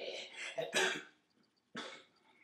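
A man coughing: rough, breathy coughing through the first second, then one short, sharp cough near the end.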